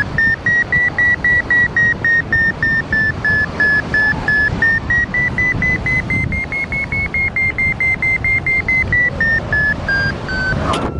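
Paragliding variometer beeping, about four short beeps a second over wind noise on the microphone. The pitch climbs in the first half, holds high, then drops near the end. It is the tone a vario gives in rising air: the glider is climbing in a thermal, more strongly in the middle, with the lift easing toward the end.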